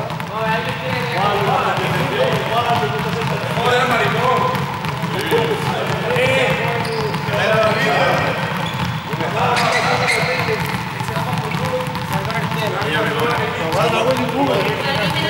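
Many small juggling balls bouncing on a sports-hall floor and being caught, under the chatter of many voices.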